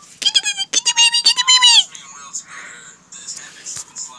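A child's high-pitched squealing voice without words, held for about a second and a half and then falling off. Fainter rustling follows.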